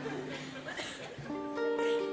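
Audience laughter dies away, then an acoustic guitar starts a fado introduction about a second in, with plucked notes ringing on.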